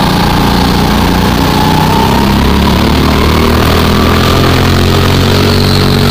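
Go-kart engine running steadily close to the microphone while the kart is driven around the track, its pitch shifting only slightly.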